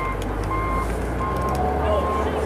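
A vehicle's reversing alarm beeping on one steady pitch, roughly three beeps every two seconds, over a low rumble.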